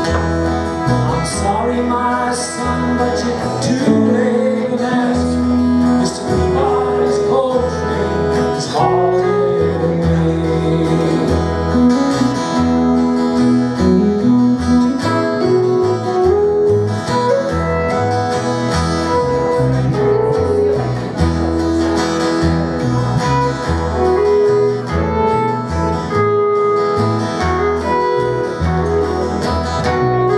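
Live country-folk trio playing: electric guitar, strummed acoustic guitar and upright double bass, with a steady bass line under sustained guitar notes.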